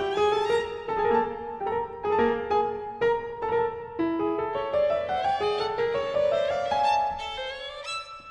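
Violin playing a slow, lyrical melody of held notes with piano accompaniment. The line climbs toward the end.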